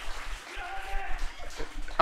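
Faint, indistinct voice over a low, steady background hiss.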